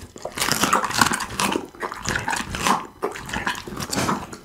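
Pit bull chewing a raw duck neck close to the microphone: dense, irregular crunching of bone with smacking of the jaws.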